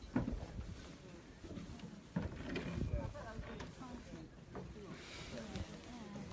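Indistinct voices of people talking in the background, with a couple of short knocks, one just after the start and one about two seconds in.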